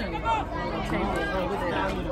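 Sideline crowd of spectators and coaches talking and calling out at once, several voices overlapping in a steady babble.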